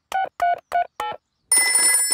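Cartoon telephone call: four short, quick pitched beeps as the number is dialled. After a brief gap, a telephone bell starts ringing about a second and a half in.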